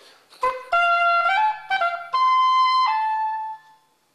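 Classical-period oboe playing a short melodic phrase in its upper register: a quick run of rising notes, then a held high note that steps down to a last note and fades out near the end. This is the range where this oboe sounds better.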